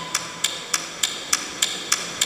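A sparse break in a live band's song: a single high percussion click keeping steady time, about three clicks a second, over a faint held tone.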